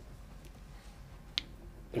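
Quiet room tone in a meeting room, broken by a single short, sharp click about a second and a half in, just before a man starts to speak.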